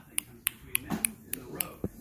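Fingers snapping in a steady rhythm, about three to four sharp snaps a second, with a faint voice murmuring underneath.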